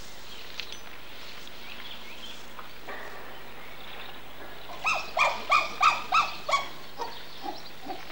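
An animal's short pitched calls repeated in a quick run of about six, roughly three a second, then a few fainter ones near the end.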